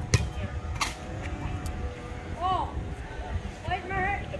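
A low, uneven rumble with two sharp clicks in the first second, a short snatch of a voice about halfway through and a voice starting again near the end.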